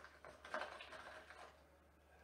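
Near silence: faint room tone with a few soft, indistinct sounds in the first second and a half, then silence.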